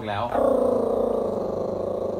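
A Yorkshire terrier growling close to the microphone: one long, evenly pulsing growl that starts about a third of a second in and lasts nearly two seconds.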